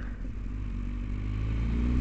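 Low rumble of a motor vehicle engine, growing gradually louder, with a faint hum that slowly rises in pitch.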